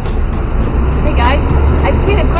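City street traffic dominated by a steady low rumble, typical of a bus engine running close by, with people's voices joining from about a second in.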